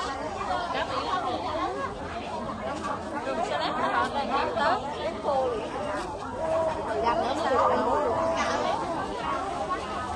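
Chatter of many people talking at once around a busy cooking area, overlapping voices with no single speaker standing out.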